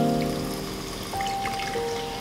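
A drink poured in a thin stream from an opened aluminium can into a glass carafe, a light trickle under background music with held notes.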